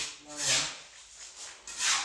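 Gritty scraping of wet, gravelly concrete mix being scooped off a concrete floor and packed into plastic paver-tile molds, three short scrapes.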